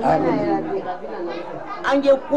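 Speech only: people talking, with voices overlapping.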